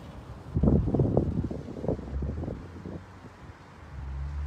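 Wind buffeting a microphone in irregular low rumbles. The rumbles start about half a second in and die down after about three seconds.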